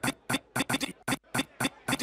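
Electronic drum hits opening a DJ set: short, sharp, dry strikes, about five a second in an uneven pattern with brief silences between them.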